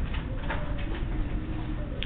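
Pencil drawing on paper: a few short scratchy strokes for an arrowhead, then a long stroke ruling a line, over a steady low hum.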